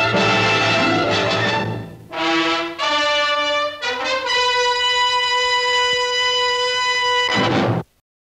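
Orchestral music led by brass: a full-orchestra passage, then a few separate brass notes and a long held brass chord, closing on a short loud orchestral hit that cuts off abruptly.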